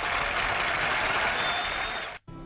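Concert audience applauding at the end of a song, over the orchestra's last notes fading in the first moments.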